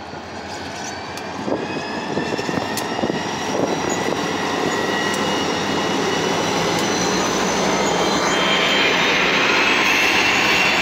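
Diesel freight locomotives drawing near and passing at close range. The engine drone grows steadily louder, with a whine that rises slightly in pitch, a few sharp clicks early on, and louder rumbling noise near the end as the lead unit goes by.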